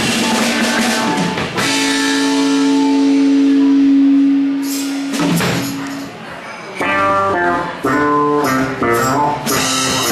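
Live rock band playing an instrumental passage with guitar and drum kit. The guitar holds one long note for about three seconds, then plays a run of quick notes.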